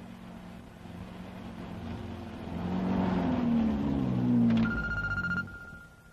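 A car engine approaching and growing louder as the car pulls up, its pitch wavering. Near the end a telephone bell starts ringing.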